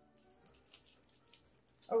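Acrylic paint marker being shaken, its mixing ball rattling inside the barrel in a run of quick, faint clicks, about six a second.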